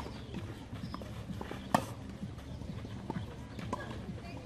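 Tennis rally on a clay court: racket strikes and ball bounces. A single sharp hit about two seconds in is the loudest, with fainter knocks before and after it.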